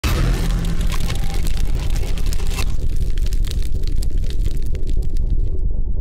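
Logo-intro sound design: heavy, steady bass under a bright noisy hiss that drops away about two and a half seconds in, then crackly ticks, with the high end cut off sharply near the end.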